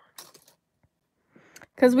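A few brief clinks of metal rhinestone costume jewelry pieces knocking together as a hand sifts through a pile of brooches, about a quarter second in.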